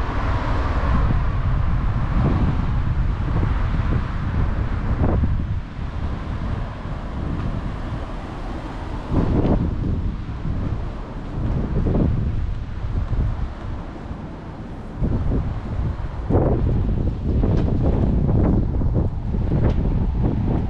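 Wind buffeting the microphone in uneven gusts, heavy low rumble rising and falling, over the sound of cars on the street alongside.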